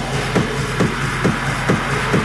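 Dark techno music in a stripped-down passage with no heavy bass kick: a sharp percussive hit repeats about twice a second over a steady hissing wash.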